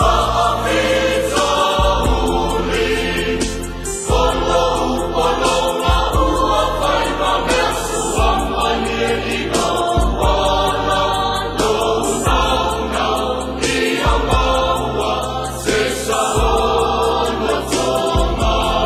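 A choir singing a slow hymn over a deep sustained bass accompaniment whose notes change about every two seconds.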